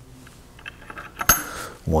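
A 20-gram slotted mass being set onto a stack of slotted masses on a weight hanger: a few faint scrapes and small clicks, then one sharp click about a second and a quarter in.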